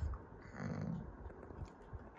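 Yellow Labrador retriever panting quietly, with a brief low sound from the dog about half a second in.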